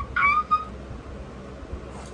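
A woman's brief, high-pitched excited squeal with no words, bending up in pitch and then held for about half a second near the start.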